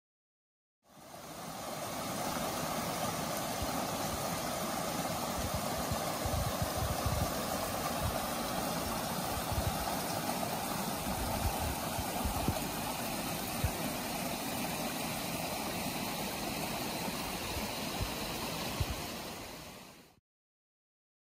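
A small mountain stream running and splashing over rocks in a steady rush that fades in about a second in and fades out near the end. Irregular low buffeting on the microphone runs under it.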